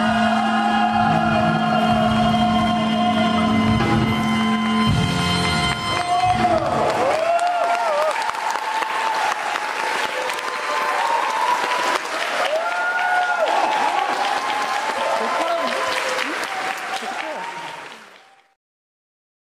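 The closing song of a stage musical's curtain call, cast singing over the band, ends about six seconds in. An audience then applauds, with voices shouting and cheering over the clapping, until the sound fades out at the very end.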